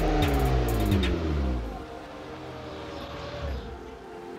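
A car engine, its pitch climbing and then falling away over the first couple of seconds before fading down.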